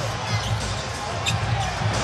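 Basketball dribbled on a hardwood arena court under the steady noise of the crowd during live play, with arena music playing low underneath.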